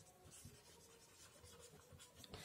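Faint scratching of a marker pen writing on a whiteboard, barely above near silence.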